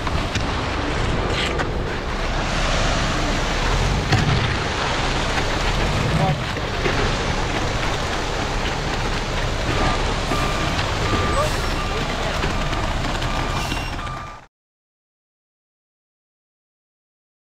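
Concrete mixer truck running steadily while wet concrete slides down its chute and is raked into place. The sound cuts off to silence about fourteen seconds in.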